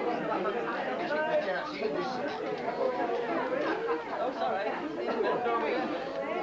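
Many people talking at once: steady overlapping chatter of a roomful of guests.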